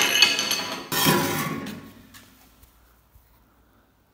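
Two hammer blows on a metal exhaust pipe, about a second apart, each ringing out and dying away over a second or so, as a dented edge is hammered back into shape.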